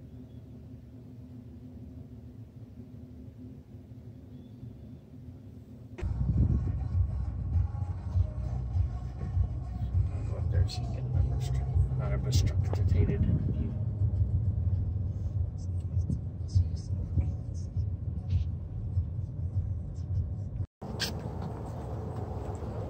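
Faint steady room hum, then, about six seconds in, a loud low rumble with scattered clicks, typical of a car moving slowly across a parking lot as heard from inside the car. A single spoken word falls in the middle, and the rumble cuts off shortly before the end.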